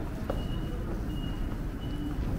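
Station passage ambience: a steady low rumble, with a faint thin high tone that sounds briefly three times.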